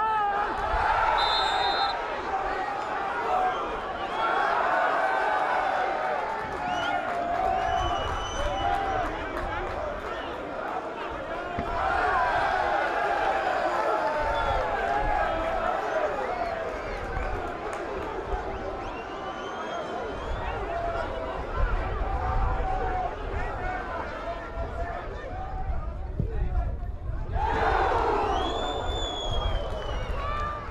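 Voices of spectators and players at a football match: many people shouting and calling at once, overlapping, with a short lull near the end.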